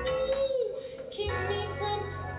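A woman singing a long held note into a microphone over band accompaniment. The note bends down and ends just over half a second in, then lower sustained notes continue with a low bass line underneath.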